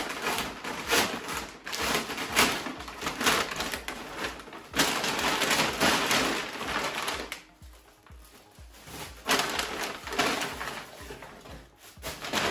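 Large brown kraft-paper shopping bag crinkling and rustling as it is opened and handled, in irregular bursts with a quieter pause a little past halfway.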